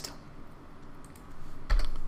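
A few light computer keyboard keystrokes, scattered taps, with a louder low thump near the end.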